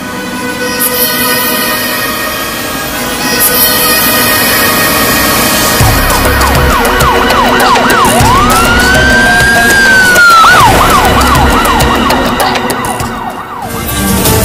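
Film score with sustained tones. About six seconds in, an electronic emergency-vehicle siren comes in over a low rumble, yelping up and down about three times a second, then rising into one long held wail, then yelping again, and it stops shortly before the end.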